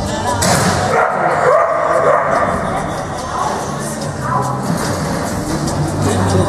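A dog barking during a fast run, with the loudest burst coming about half a second in, over background music and voices.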